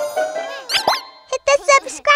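Cartoon sound effects over children's music: two quick rising squeaks about a second in, followed by short cartoon character voices.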